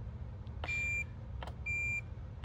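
Digital multimeter in continuity mode beeping twice, each a short steady high tone lasting under half a second, as its test probes touch points that are electrically connected. A low hum runs underneath, with a faint click between the beeps.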